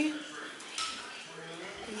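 Faint light clinks and clatter in a quiet room, with a voice trailing off at the very start.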